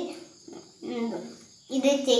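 A child's voice: a word trails off at the start, one short utterance about a second in, then talking starts again near the end, with short pauses between.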